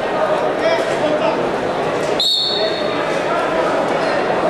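A referee's whistle gives one short, high blast about two seconds in, the signal to start wrestling from the par terre position, over a steady murmur of crowd and voices in a large arena hall.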